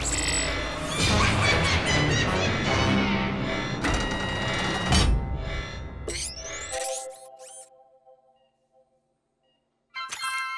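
Cartoon score and sound effects with a sharp thump about five seconds in. A few quick sliding effects follow, then the sound fades to near silence for the last second or so.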